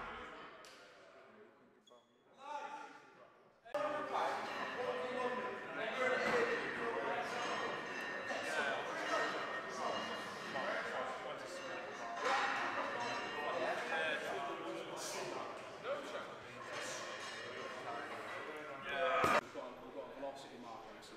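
Music fades out over the first two seconds. After a short lull, several people start talking at once about four seconds in, in a large indoor hall, with scattered thuds and a loud bang near the end.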